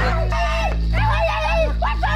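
Dog whimpering and yelping in a run of about four short, high, rising-and-falling calls, over steady background music.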